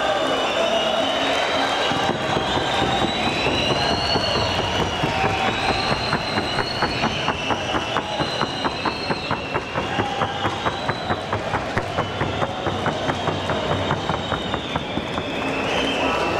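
Hoofbeats of a trotting horse, a quick even rhythm of about four strokes a second from about five seconds in until near the end. Drawn-out high tones that rise and fall sound over them throughout.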